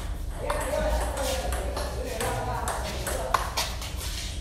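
Table tennis rally: the ball clicking sharply off the paddles and the table in a quick back-and-forth string of hits.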